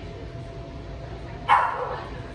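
A single loud dog bark about three-quarters of the way through, falling in pitch as it fades.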